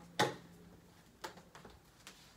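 Hard objects being handled: one sharp knock just after the start, then two lighter clicks about a second later.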